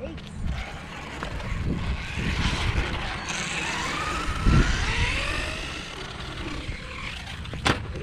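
Electric RC monster truck driving on concrete: its motor whine rises and falls in pitch as it speeds up and slows, over tyre rumble. There is a thump about halfway through and a sharp click near the end.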